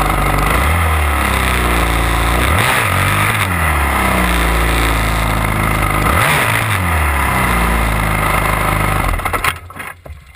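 Dirt bike engine ridden hard, its pitch climbing and falling several times as the throttle is opened and closed through the gears. The engine sound drops away sharply near the end as the bike comes to a stop.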